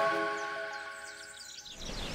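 Background music fading out, its held notes dying away, with a short flurry of high bird-like chirps partway through.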